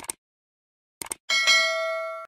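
Mouse-click sound effects, a double click at the start and another about a second in, then a bright bell chime that rings on and slowly fades: the sound effects of an animated subscribe button and notification bell.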